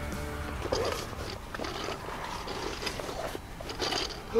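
Rustling and rummaging in a fabric game bag as birds are pulled out, with scattered small clicks and knocks. Background music holds a note during the first second, then stops.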